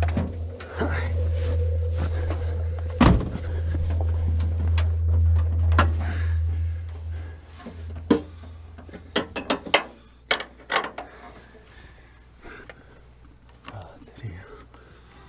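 Low, droning suspense music that fades out about halfway, with a heavy car-door thunk about three seconds in. After that comes a quick run of sharp clicks and knocks from someone working at the controls of a small car that won't start, its cables cut.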